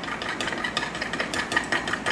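A spoon stirring liquid soft plastic in a glass measuring cup, with quick, irregular light clicks and scrapes against the glass.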